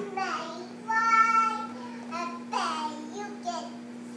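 A toddler girl singing in short phrases, holding one high note for about half a second about a second in, with a steady faint hum underneath.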